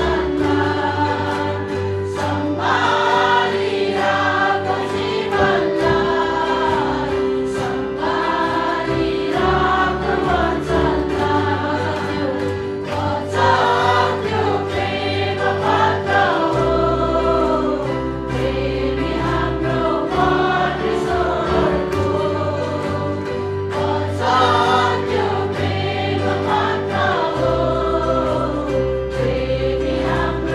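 A group of women singing a worship song together into microphones, backed by electric bass guitar holding long low notes and a steady beat.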